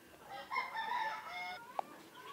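A faint animal call lasting about a second, followed shortly by a brief high blip.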